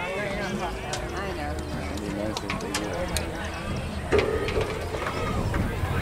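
Indistinct chatter of voices on a football sideline, with a few short sharp clicks and a louder voice joining about four seconds in.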